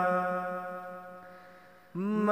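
A held, unaccompanied vocal note from a naat recitation, steady in pitch and slowly fading away. A new sung phrase begins abruptly at the very end.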